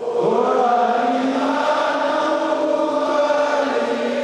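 Many voices singing together in unison, a slow song of long held notes; a new phrase begins just after the start.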